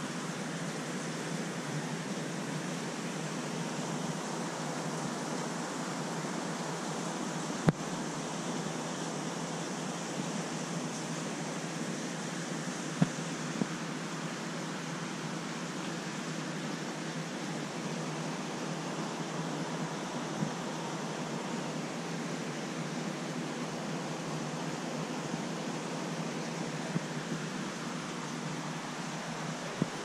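Steady hiss of aquarium aeration and water circulation: air bubbling up from an airstone through a large tank. A sharp click about eight seconds in and a smaller one about five seconds later.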